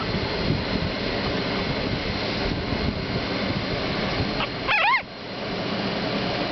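Young Boston Terrier puppy giving one short, high squeak near the end, over steady background noise.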